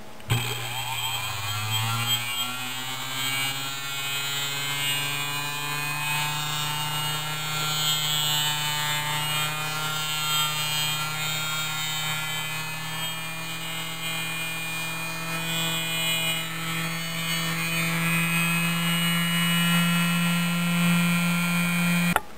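Small 4-inch electric bench disc sander switching on and coming up to speed over about two seconds, then running with a steady hum. The end of a laminated wooden fingerboard deck is held against the sanding disc throughout, trimming its shape.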